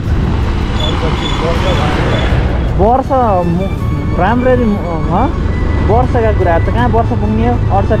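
Bajaj Pulsar NS200 motorcycle running along a dirt road, with a steady low engine and wind rumble on the camera microphone and a rush of noise in the first couple of seconds. From about three seconds in, a voice sings over it.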